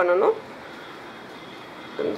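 A voice speaks for a moment at the start, then steady background hiss with no distinct events.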